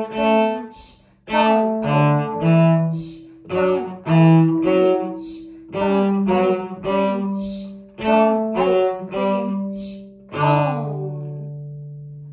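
Cello bowed in the 'ice cream, shh, cone' rhythm: short notes and longer held notes in repeating groups with brief gaps, the pitch changing as left-hand fingers are put down. The run ends about ten seconds in on one long, low held note that slowly fades.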